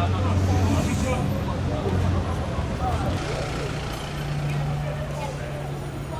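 A vehicle engine idling with a steady low hum that steps up to a higher, steady pitch about three seconds in, amid street chatter.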